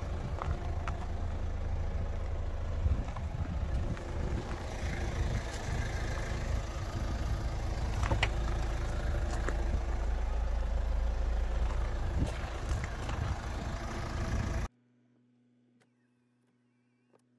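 A steady low rumble of wind buffeting the microphone, with scattered clicks and light knocks from handling the car's door. Near the end it cuts off suddenly to a much quieter car cabin with only a faint low hum.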